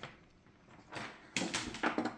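Quiet bench handling: a few light clicks and knocks from about a second in, as the soldering iron and hand are moved away from the work.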